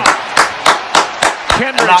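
A man clapping his hands in a quick steady rhythm, about three claps a second, in celebration.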